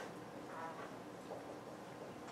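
Dry-erase marker squeaking on a whiteboard while writing, a few short faint squeaks.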